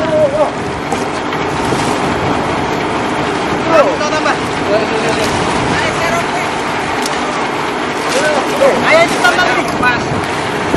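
Steady noise of wind and a ship's running engine on deck, with men's short shouts now and then, strongest about four and nine seconds in.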